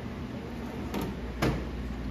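Drawer of a U.S. General metal rolling tool chest being pushed shut on its runners: a small click about a second in, then a sharper knock as it closes about half a second later.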